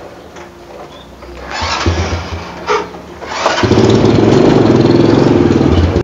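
Honda Supra single-cylinder four-stroke motorcycle being started: a couple of seconds of starting attempts, then the engine catches and runs loudly for about two seconds before cutting off abruptly.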